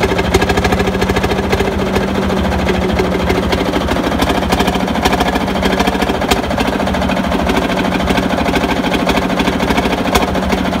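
Field Marshall tractor's single-cylinder two-stroke diesel engine idling, a steady, rapid and even train of firing beats.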